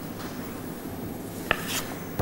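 Sheets of paper being handled and lifted from a table, quiet rustling with one sharp tick about one and a half seconds in.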